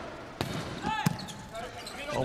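A volleyball struck twice in an indoor arena: a sharp hit about half a second in, the jump serve, and a second sharp hit about a second in as the serve is received. A brief high squeak comes just before the second hit.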